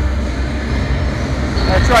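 B&M dive coaster train rolling slowly along its steel track with a steady low rumble, approaching the chain lift.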